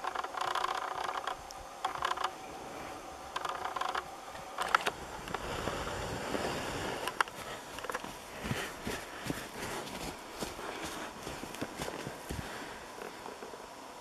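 Irregular crunching and scraping in snow with scattered sharp clicks, as Jersey cows' hooves run and step through it.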